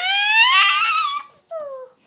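A toddler's high-pitched vocal squeal: one loud rising call lasting just over a second, then a shorter call that falls in pitch.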